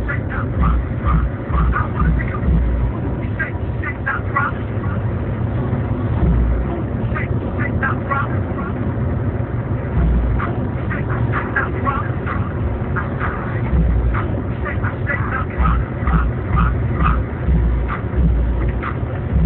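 Car driving, heard from inside the cabin: a steady engine and road rumble that swells and eases, with clusters of short high-pitched chirps coming and going.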